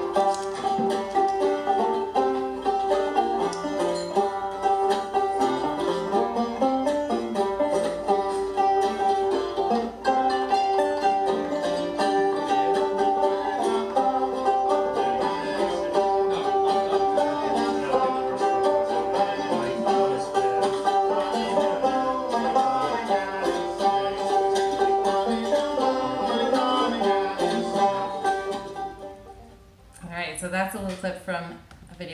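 Improvised acoustic string jam of banjo, mandolin and ngoni (West African folk lute), plucked melody lines weaving over a steady pulse, blending West African and bluegrass styles. The music fades out near the end.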